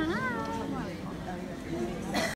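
A high, whiny voice call that rises and then falls in pitch over about half a second near the start, meow-like in sound, followed by weaker gliding voice sounds over crowd hubbub.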